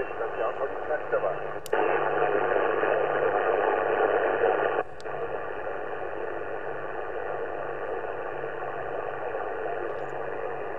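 Yaesu FT-710 receiver audio on 40-metre lower sideband: hiss and static from a noisy band, cut off above about 3 kHz. A sharp click about 1.7 s in brings a jump to louder noise. About 5 s in the noise drops back, with another click, as the receiving antenna is switched between the JPC-12 and the loop on ground.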